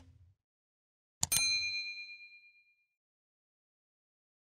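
Subscribe-animation sound effect: a mouse click, then a second click about a second in followed by a bright notification-bell ding that rings out and fades over about a second and a half.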